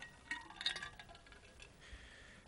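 Quiet room tone with a few faint, light clicks and clinks in the first second.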